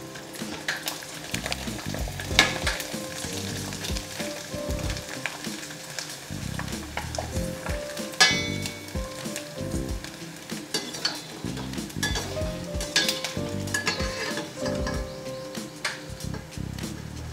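Pieces of dough deep-frying in hot oil in a stainless steel kadai, sizzling and crackling steadily. A slotted metal spoon stirs them and knocks against the pan now and then.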